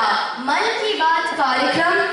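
Speech only: a girl speaking continuously into a handheld microphone.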